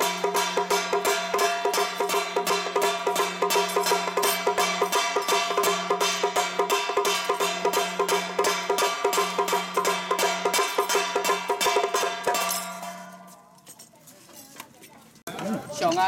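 Live lion-troupe gong-and-drum percussion: drum, gongs and cymbals beating a fast even rhythm of about five strokes a second over a gong's ringing tone. The beating stops about twelve seconds in and dies away, and a man's voice starts near the end.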